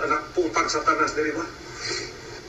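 A man's voice speaking, from a recording played back, for about a second and a half, then a lull.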